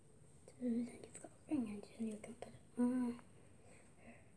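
A girl's voice speaking in a few short phrases, starting about half a second in and stopping just after three seconds.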